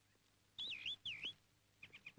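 A bird calling twice: two short warbling whistled notes that swoop up and down in pitch, starting about half a second in.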